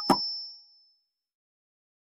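Doorbell giving one short ding that dies away within about half a second.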